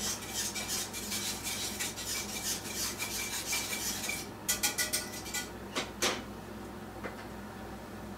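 A cooking utensil scraping and stirring rapidly against a pot of simmering crushed tomatoes on the stove for about four seconds. A quick run of sharp clicks follows, then a couple of single knocks.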